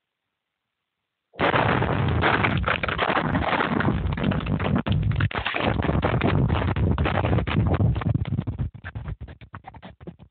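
Underground dynamite blast in a mine drift: a round of loaded drill holes going off. It starts suddenly about a second and a half in and keeps rumbling for several seconds, then breaks up into scattered cracks that fade near the end.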